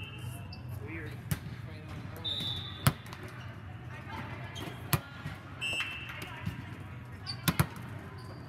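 Indoor volleyball rally: sharp slaps of the ball being struck, about four times, the loudest about three seconds in and a quick double hit near the end. Short high squeaks of sneakers on the sport-court floor come between the hits, over a steady low hum in the hall.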